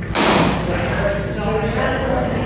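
A single loud thud as a strike lands during sparring, just after the start, echoing briefly in the large hall. Voices talk in the background.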